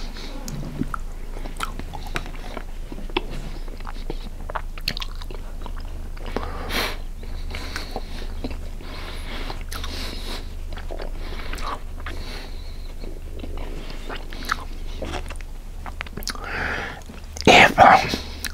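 Close-miked chewing of a mouthful of cabbage roll casserole, with wet mouth sounds and many small clicks and smacks.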